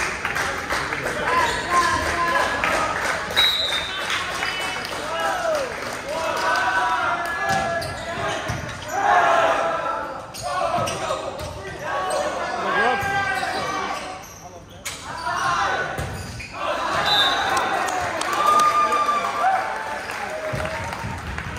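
Volleyball rally in a school gym: the ball is served and struck back and forth with sharp slaps, while players and spectators call out, all echoing in the large hall.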